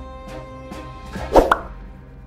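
Channel-logo intro jingle: music with evenly spaced notes, a short, loud sound effect about one and a half seconds in.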